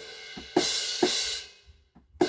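Sampled acoustic cymbals from the Superior Drummer 3 virtual drum kit, played live from a MIDI keyboard. A cymbal rings and is struck again about half a second and a second in. Near the end it is cut short: a cymbal choke, set off by the keyboard's aftertouch.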